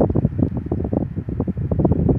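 Airflow from a small MEIRAO electric desk fan blowing onto the microphone, making a loud, irregular low buffeting rumble.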